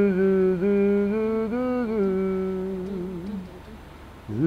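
A voice humming a wordless tune in long held notes with small dips in pitch, fading out about three and a half seconds in.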